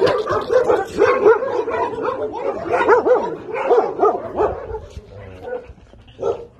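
Dogs giving a rapid run of short, high-pitched calls that rise and fall, two or three a second, dying down near the end.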